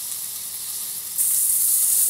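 Beef burger patty frying in a hot pan, a steady sizzle that jumps suddenly louder a little over a second in.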